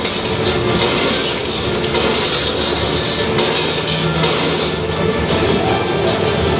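Soundtrack of Magic Leap's concept video playing back: music mixed with continuous sound effects from the game shown in the video, with a steady low hum entering about halfway through.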